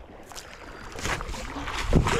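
Water sloshing and splashing around someone wading while hauling a small boat in by its rope, growing louder through the second half.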